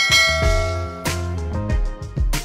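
A bright bell-like ding rings out at the start and fades over about a second. It plays over electronic music with a bass line: a subscribe-button bell sound effect.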